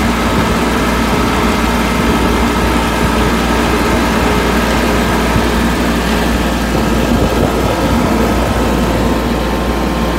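Farm tractor engine running steadily as the tractor drives along a road, heard from the driver's seat.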